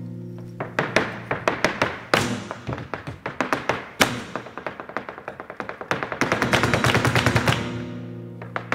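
Flamenco soleá: a guitar chord dies away, then a fast, irregular run of sharp percussive taps sets in, typical of a dancer's zapateado footwork, growing densest near the end, with guitar tones beneath.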